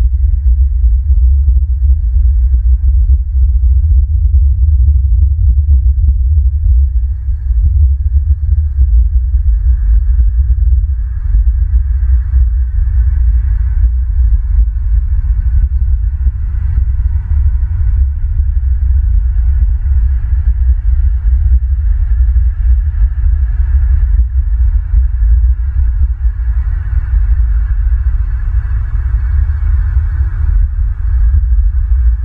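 Wind buffeting an outdoor nest-camera microphone: a loud, unsteady low rumble that flutters continuously. A faint steady higher hum sits underneath.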